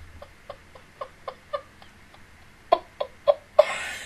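A woman's stifled laughter behind a hand held over her mouth: short, muffled giggles about four a second, thinning out midway, then louder again, ending in a breathy rush of air.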